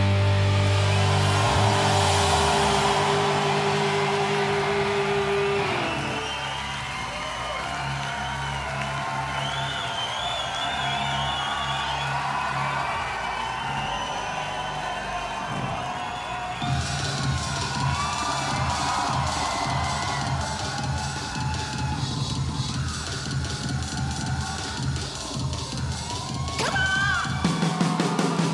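A rock band's held chord ringing out and stopping about six seconds in, followed by a concert crowd cheering and whistling. From about seventeen seconds in, a steady rhythmic beat with a low tone comes in under the cheering.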